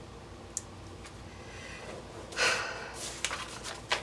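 Quiet handling of planner stickers on a paper page. A small tick comes about half a second in, then a short breathy rush of noise a little past the middle, and a few soft clicks near the end.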